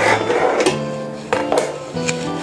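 Background acoustic guitar music: plucked notes struck every half second or so, each left to ring and fade.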